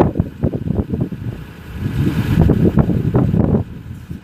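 Gusty wind buffeting the microphone: an uneven low rumble that surges and drops away twice, once a little after the first second and again near the end.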